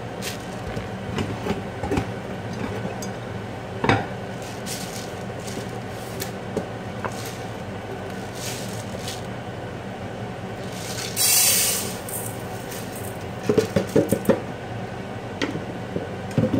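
Kitchen handling sounds over a steady low hum: a single knock about four seconds in, a brief rush of noise lasting about a second near the eleven-second mark, and a quick run of small knocks and clatters near the end.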